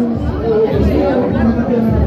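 People talking and chattering close to the microphone.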